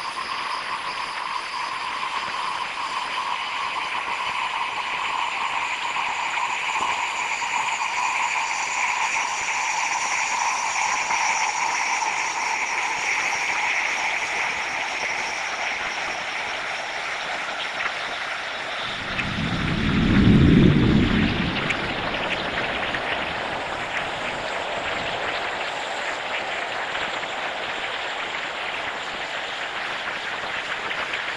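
Musique concrète electroacoustic texture: a dense hissing noise with pitched bands that slowly sink. About twenty seconds in, a deep low swell rises and fades, the loudest moment.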